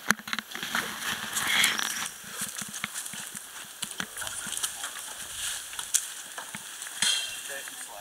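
Irregular crackling and rustling from a tall bamboo culm being pulled over by a rope, with a few sharp snaps, one at the start and another about six seconds in.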